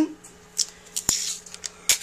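A strip of masking tape being handled: a sharp click about a second in, then a short rasp as the tape comes off the roll, and another click near the end.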